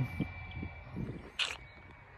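Open-air ambience with a low wind rumble on the microphone, a faint steady high tone, and one brief rustle about one and a half seconds in.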